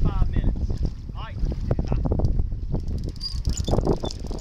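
Wind buffeting the microphone on a boat at sea, a steady low rumble with scattered knocks, and a voice heard indistinctly at moments.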